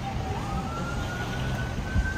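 Emergency vehicle siren wailing: a single tone that dips, then climbs slowly and holds high near the end. It sounds over the low rumble of street traffic, with a brief knock just before the end.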